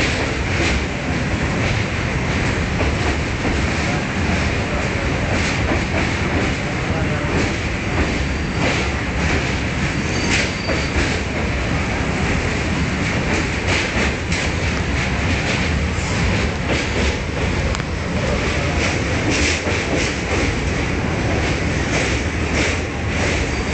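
Passenger train running over the Pamban rail bridge, heard from inside the carriage: a steady rumble of the train under way, with irregular clacks from the wheels.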